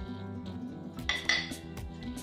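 Small glass spice bowls clinking, with a brief ringing clink about a second in, over steady background music.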